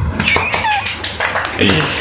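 A group of young people laughing and squealing, with high-pitched cries that slide down in pitch early on and a few sharp slaps or claps.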